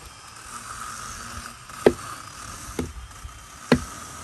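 Axe chopping into a dry, dead fallen log: three blows about a second apart, the second one softer.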